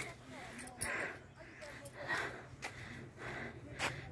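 Faint voices in the background between louder talk, with a single sharp click near the end.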